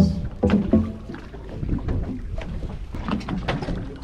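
Water slapping and lapping against the fibreglass hull of a center-console fishing boat drifting at sea, with an uneven low rumble and frequent short splashes.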